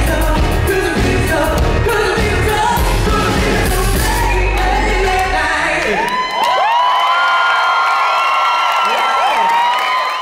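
Live pop-rock band with a male lead singer on a close handheld microphone; about six seconds in the band stops and the audience screams and whoops in several long, high, overlapping cries.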